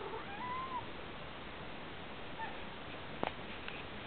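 Ginger-and-white domestic cat meowing softly: one short meow that rises and falls near the start, then a fainter short call about halfway through. A couple of sharp clicks near the end.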